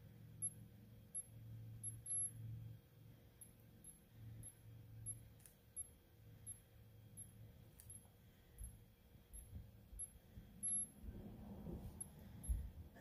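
Near silence: room tone with a faint low hum and faint, short high-pitched ticks about twice a second.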